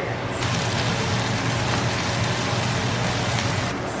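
Diced onion, bell pepper, jalapeños and garlic sizzling in hot oil in a cast iron skillet: a steady frying hiss over a low hum. It starts just after the beginning and cuts off shortly before the end.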